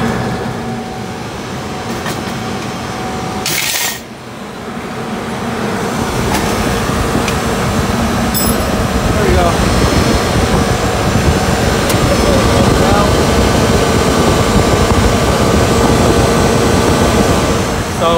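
Loud, steady machinery noise that builds over several seconds and then holds, with a sharp clatter about three and a half seconds in.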